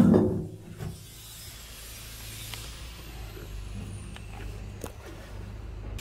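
A steady low rumble and hum with a few faint knocks, opening with a loud bump that dies away within half a second.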